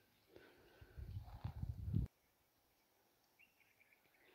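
Low rumbling noise on the microphone that builds and then cuts off abruptly about two seconds in. A few faint bird chirps follow near the end.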